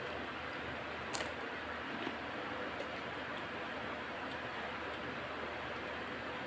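Steady background hiss with faint chewing of crunchy tortilla chips and rice, and a short crisp crackle about a second in.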